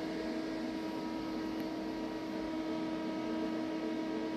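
Steady electrical hum with a few held tones over a soft, even fan-like hiss, from the battery charger running while it charges the pack.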